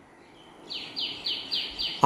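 A bird calling: a quick series of five short, falling high notes, about three a second, starting just under a second in.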